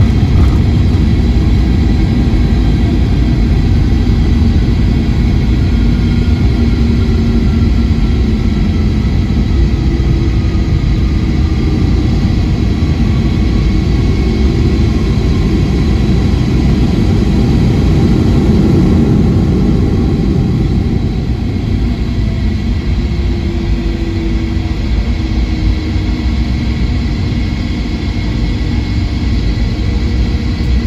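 Boeing 757-200's jet engines running at low power as the airliner taxis, heard inside the cabin over the wing: a steady low rumble with faint engine tones sliding slowly down in pitch. The noise eases a little about two-thirds of the way through.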